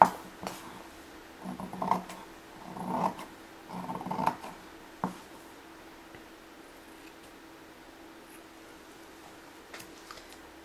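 Fabric scissors cutting through cheesecloth: a few sharp snips and three short rasping cuts in the first half. After that only a faint steady hum is left.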